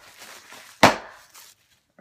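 Plastic air-bubble packing being handled, with faint crinkling and one sharp, very loud snap a little under a second in.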